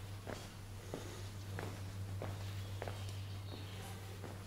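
Footsteps of a person walking on stone paving, an even pace of about one step every 0.6 seconds, over a steady low hum.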